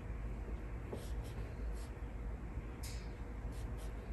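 Paintbrush loaded with dark green gouache working on paper: a few short, soft brush strokes, the clearest about three seconds in, over a steady low background hum.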